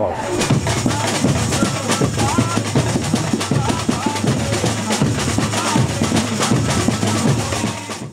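A samba school bateria (drum section) rehearsing: surdo bass drums and other drums play a dense, driving samba rhythm, with a steady deep surdo tone underneath.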